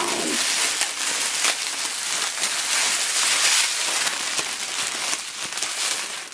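Clear cellophane wrap crinkling steadily as it is gathered and twisted together by hand.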